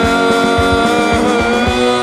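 Punk rock music: a held electric guitar chord with a drum beat of about four hits a second. Near the end the drums stop and the chord rings on.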